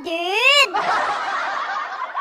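A high voice draws out a syllable with a rising-and-falling pitch, then breaks into about a second and a half of breathy, hissing snicker that cuts off suddenly.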